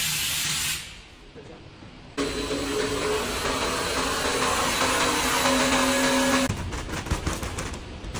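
Electric motor of a vertical stirring mixer comes on about two seconds in and runs with a steady hum of several tones. Near the end this gives way to a run of irregular clicks and knocks.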